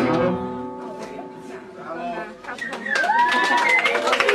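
Guitar and double bass ending a piece, the last chord ringing out and fading. About two and a half seconds in, the audience starts clapping, with a gliding whoop of a cheer over the applause.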